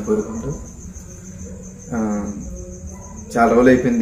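A man's voice in short phrases separated by pauses, over a faint, steady, high-pitched tone that runs throughout.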